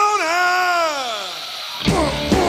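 Unaccompanied singer holding a high note at the end of a blues line, then sliding it down in pitch as it fades. Near the end it cuts off abruptly and full rock band music comes in.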